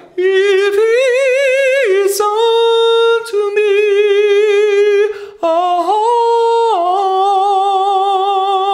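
A man singing sustained open vowels a cappella in a high head voice with vibrato, demonstrating pure bel canto vowels. He holds a few long notes, swelling up a step and back down, then changes vowel, with a short break about five seconds in.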